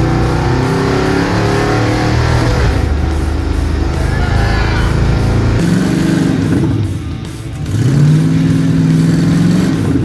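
Car engine running with music underneath: first a steady engine note that slowly falls in pitch, then, after a cut, a carbureted V8 revved up near the end and held at a raised speed.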